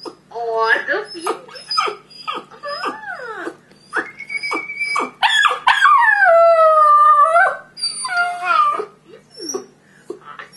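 Border terrier howling and whining into a video phone: a run of short calls that bend up and down in pitch, then one long howl that slides downward, starting about five seconds in and lasting over two seconds.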